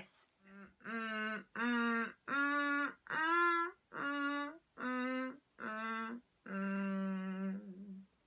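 A woman's creaky hums, vocal fry behind a closed-mouth hum, sung as a vocal exercise up and down a minor pentatonic scale. The notes are separate and rise in pitch to a peak about three seconds in, then fall back, ending on a longer low note. The creak brings the vocal cords together tightly, adducting them fully.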